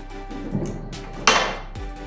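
Background music with a steady beat. A short, loud burst of noise just past the middle is the loudest moment.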